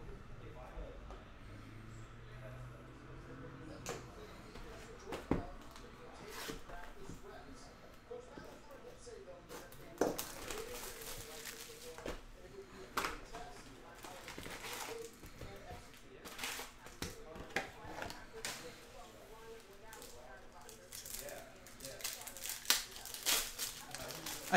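O-Pee-Chee Platinum hockey card boxes and foil packs being handled and opened on a table: scattered knocks and clicks of cardboard, with crinkling and tearing of wrappers. Near the end a foil card pack is torn open.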